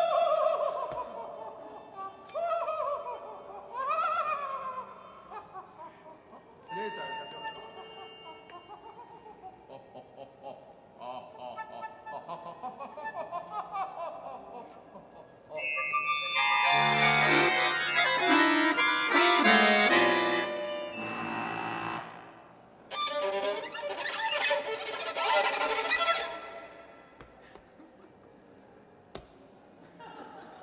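Experimental new-music trio of violin, bayan and flute playing: sliding glides in pitch in the first few seconds, scattered short and held notes, then a loud dense cluster of many tones from about 16 to 22 seconds and a shorter one a few seconds later.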